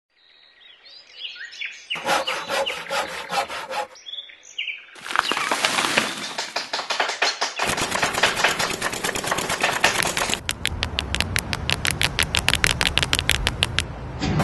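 Birds chirping briefly at the start, then a run of rhythmic clattering in several sections that grows denser and ends in a fast, even ticking of about seven strokes a second.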